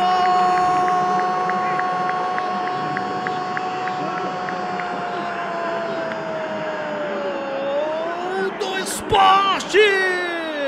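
A football commentator's long drawn-out goal cry: one held note lasting about seven or eight seconds that sinks slowly in pitch near its end. Short shouted words follow about nine seconds in.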